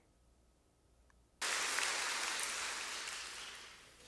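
Audience applause that starts suddenly about a second and a half in and slowly dies away, coming from a video clip played through the room's loudspeakers.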